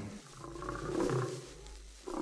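A lion's low rumbling growl, swelling about halfway through and fading near the end.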